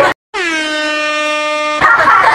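An edited-in horn-like sound effect: a single steady tone lasting about a second and a half that starts after a brief dead-silent dropout and cuts off abruptly.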